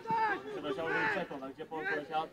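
Men's voices calling out and talking across a football pitch, with no other clear sound.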